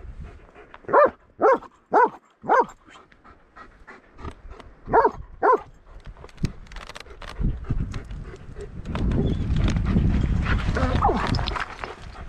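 German Shepherd dog barking close by: four short barks about half a second apart, then two more a few seconds later. Near the end a rough, steady noise comes in.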